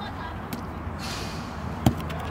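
A foot kicking a football: one sharp thud near the end, with a fainter tick about half a second in, over a steady low background.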